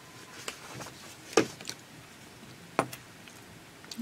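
Quiet studio room tone broken by a few short sharp clicks, the loudest about a second and a half in and another near three seconds.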